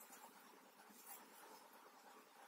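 Near silence, with faint scratchy rustling and a couple of light ticks from thin metal knitting needles working yarn.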